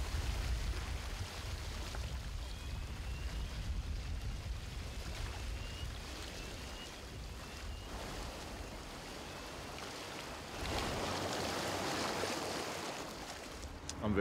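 Choppy sea with wind: a steady rushing of waves that swells louder about ten and a half seconds in.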